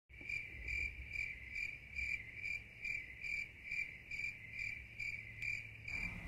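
Cricket chirping in an even, unbroken rhythm, a little over two chirps a second, over a faint low hum.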